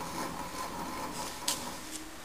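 Steady faint hum of an idle workshop, with one sharp click about one and a half seconds in as the crankshaft grinder's tailstock handle is worked.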